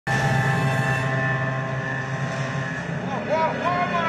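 The soundtrack of a sea-battle film playing in a cinema: a steady low rumble under several held tones, with a wavering tone that slides up and down a few times near the end.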